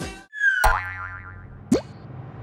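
Closing theme music cuts off, then cartoon sound effects: a sharp click and a falling, wobbling boing about half a second in, and a quick rising zip near the end.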